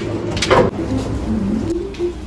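A bird cooing in a series of short, low calls, with a sharp clatter about half a second in.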